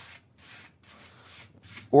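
Hand sanding block rubbing over a wooden pistol grip in short back-and-forth strokes, smoothing out Dremel marks; faint, a few strokes a second.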